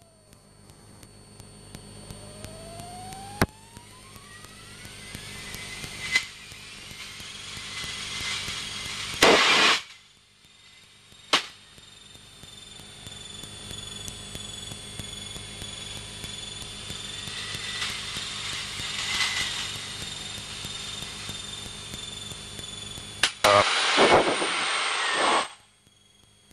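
Engine and propeller of a Piel CP-301 Emeraude light aircraft heard in the cockpit during aerobatics. It starts faint and grows louder, rising in pitch and then holding a steady whine as the aircraft dives and gathers speed. A few sharp clicks and two brief loud blasts of noise come through, one about nine seconds in and another near the end.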